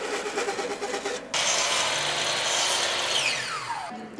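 Machine-like whirring noise that turns abruptly louder and harsher about a second in, and ends with a whine falling steadily in pitch.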